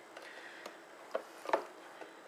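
A few light clicks and taps of handling noise, the loudest about one and a half seconds in, as a clear plastic box is moved toward a tub of water.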